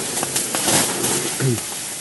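Steady hiss of steam in a small bath tent, with faint crackles, and a brief low voice sound about a second and a half in.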